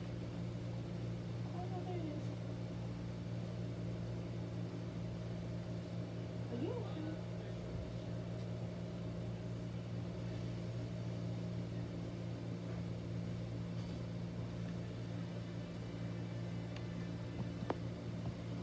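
Steady low hum of an electric fan's motor running without a break, with faint voices coming and going.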